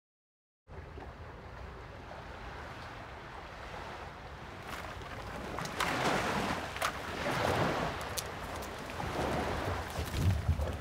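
After a brief silence, steady outdoor wind and surf ambience. From about five seconds in there is louder rustling of palm fronds, with several sharp snaps, as coconuts are worked free at the top of a coconut palm.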